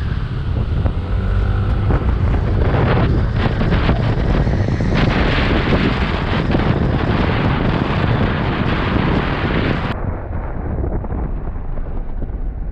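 Wind buffeting a helmet-mounted microphone on a moving motorcycle, with the bike's engine running underneath, a steady loud rush that turns duller near the end.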